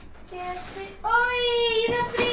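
A toddler's high-pitched voice: a few short notes, then one long sung-out vowel from about a second in.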